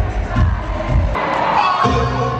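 Live concert music with a heavy bass beat through an arena sound system, which cuts off abruptly about a second in, leaving a stadium crowd screaming and cheering; music with a bass line starts again near the end.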